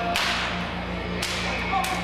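Stage gunfire from prop rifles: three sharp shot cracks, the first two trailing off in a short hiss, over a steady low hum.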